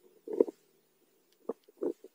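Underwater sound picked up by a submerged camera: a faint steady low hum of the water with three short low-pitched pops, about half a second in, at a second and a half, and just before the end.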